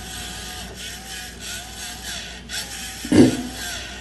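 A small motor whirring steadily, with a faint rise and fall about every two-thirds of a second, and one short louder sound about three seconds in.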